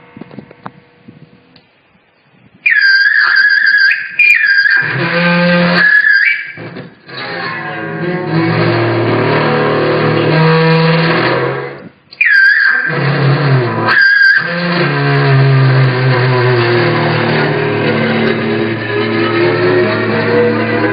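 Seven-string electric guitar notes held ringing by speaker feedback: a small speaker, fed from a modified Fender 25-watt amp, held over the strings keeps them vibrating. Several times a high feedback squeal comes in and dips in pitch. Long low notes drone and slide slightly, and the sound cuts out briefly about twelve seconds in.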